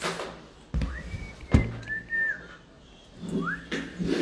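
Someone whistling three short notes that glide up and down, with sharp knocks and rubbing from a phone being handled close to the microphone.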